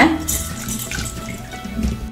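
Red cow peas tipped into water in an aluminium pressure cooker, a short splash and patter about a quarter of a second in, over quiet background music.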